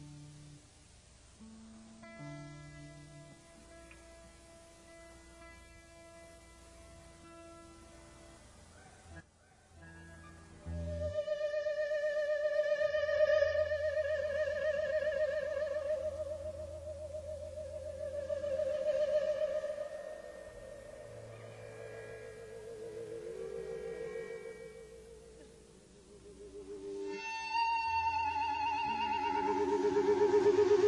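Live rock band's electric guitars and bass before a song: quiet single held notes and plucks for the first ten seconds, then from about eleven seconds long, loud, wavering sustained guitar tones like feedback over a low bass drone, swelling again near the end.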